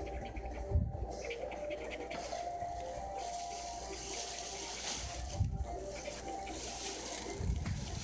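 Coin scraping the scratch-off coating from a paper lottery ticket in short hissy strokes, with a few soft low bumps as the ticket is handled. Music plays faintly underneath.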